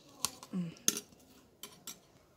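Metal spoon clinking and scraping against a plate while working aloe vera gel out of the leaf: a few sharp clicks, the loudest about a second in.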